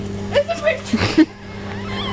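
A young woman's short cries and squeals as she tips water over herself, loudest about a second in, over a steady low hum.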